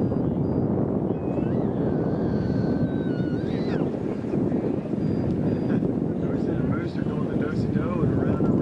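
Steady wind buffeting the microphone outdoors, a dense low rumble, with faint high chirps and whistles over it, one held whistle about two seconds in and more near the end.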